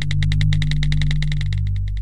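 Electronic intro music: a fast, even pulse of high synthesizer notes over a held bass tone.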